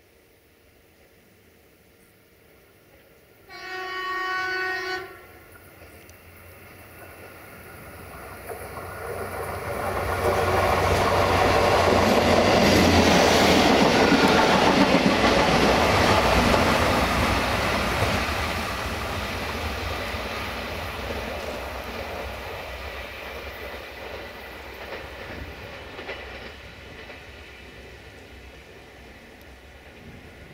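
A diesel multiple unit sounds its horn once, for about a second and a half, a few seconds in. It then approaches and passes close by, its wheel-on-rail noise rising to a peak mid-way and fading slowly as it runs off.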